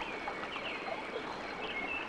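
Steady, soft water ambience like gently running or lapping water, with a few faint high chirps.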